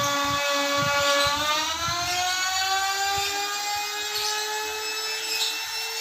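Small handheld electric power tool running with a steady motor whine, its pitch climbing slightly about two seconds in.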